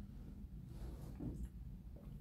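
Quiet room with a low steady hum and faint, soft sounds of someone drinking from a plastic bottle.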